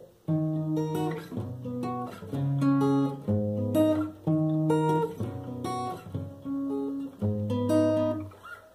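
Acoustic guitar played finger-style: arpeggiated chords, each a low bass note followed by higher notes picked one after another, with a new bass note about every second.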